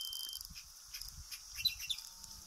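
Quiet wetland ambience with faint, brief high bird chirps, a few of them near the end.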